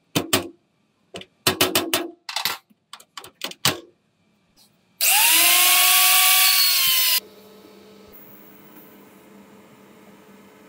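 Sharp metallic clicks and knocks as steel jack parts and a rod end are handled and fitted together. Then, about five seconds in, an angle grinder with an abrasive disc runs loud against a welded steel joint for about two seconds, its whine rising as it spins up and then holding, before stopping abruptly.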